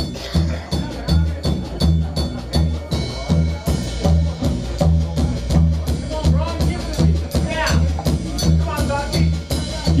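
Upright double bass played slap-style: a steady rhythm of deep plucked notes, about two a second, each with a sharp percussive click as the strings slap the fingerboard.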